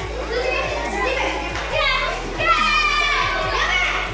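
Children's voices shouting and calling out in a hall, over background music with a steady beat.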